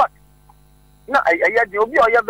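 Steady electrical mains hum, with a person's speech starting about a second in and running on.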